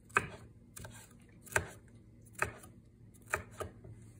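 Knife slicing small peppers into thin strips on a wooden cutting board: about six sharp chops, spaced unevenly a little under a second apart.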